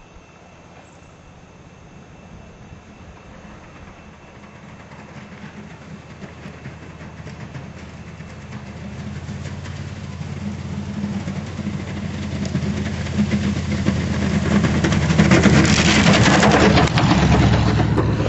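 Jeep CJ engine running under load as it pushes snow with a plow blade, growing steadily louder as it approaches. A rushing noise of plowed snow builds with it and is loudest near the end.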